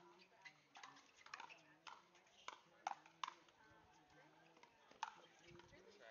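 Pickleball paddles hitting the hard plastic ball back and forth in a rally: a string of faint, sharp pops, several in quick succession through the middle.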